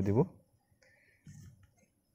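A man's voice trailing off a moment in, then near silence broken only by one faint, brief low sound about a second later.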